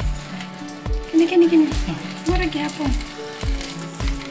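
Hose-fed foam gun spraying a jet of water, a steady hiss, over background music with a regular beat.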